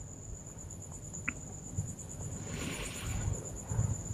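A cricket trilling: a high, steady, pulsing tone, faint, over quiet room noise.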